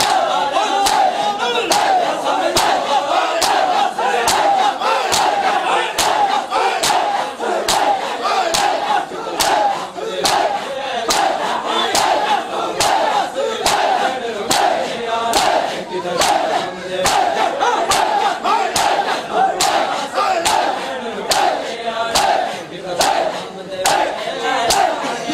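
A large crowd of mourners doing matam, striking their chests with their hands in unison about once a second, over loud massed chanting voices.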